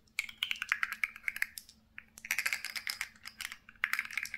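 A stack of nested hard plastic cups being tapped in quick clicking runs. There are two runs of about a second and a half each, with a short pause between them.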